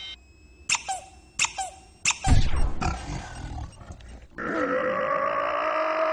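Cartoon sound effects: a few short sounds that drop in pitch, then a heavy low thump about two seconds in, the loudest moment. From about four and a half seconds a sustained music chord comes in.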